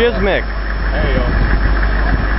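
Steady running of an idling convoy vehicle's engine, under a short shouted 'hey yo' at the start and a brief voice about a second in.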